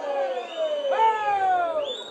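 Two long shouts on the football pitch, one near the start and a louder one about a second in, each falling in pitch. A brief high tone follows near the end.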